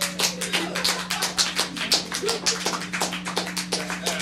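A small audience clapping, the individual claps distinct, over a steady low hum.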